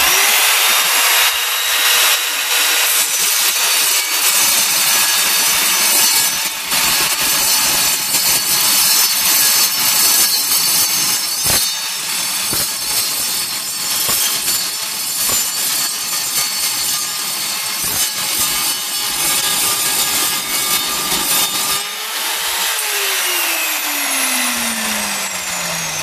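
Evolution R210SMS sliding mitre saw with its 210 mm tungsten-carbide-tipped multi-material blade starting up and cutting through a steel tube: a loud, steady metal-cutting din over the motor's whine for about twenty seconds. Near the end the cut finishes and the motor winds down with a falling whine.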